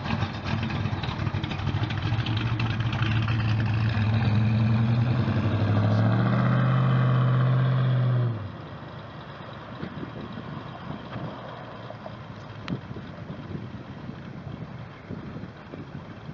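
Engine of a 1941 Ford Sedan Delivery street rod pulling away, its pitch climbing slightly as it accelerates. About eight seconds in it cuts off sharply to a much fainter sound of the car running in the distance.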